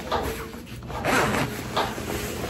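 Fabric of a windbreaker rain jacket rustling in a few short swishes as it is pulled down and the hood adjusted; the loudest swish comes just after a second in.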